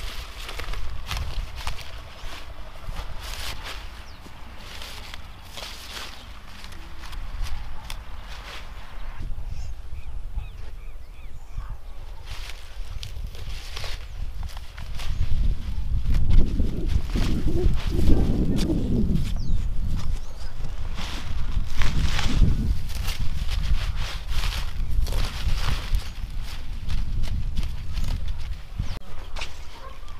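Lettuce being harvested by hand: heads cut with a knife and pulled, leaves rustling with repeated crisp snaps, under gusty wind buffeting the microphone. A short pitched, wavering call sounds just past the middle.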